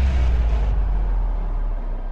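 Deep low rumble of an intro sound effect, fading away; its higher hiss dies out under a second in.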